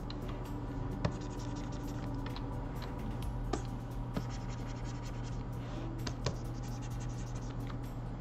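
Pen stylus scratching across a drawing tablet, with a few sharp taps, while digital sculpting strokes are made, over a steady low hum.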